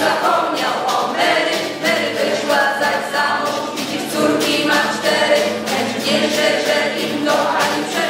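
Background music: a choir singing.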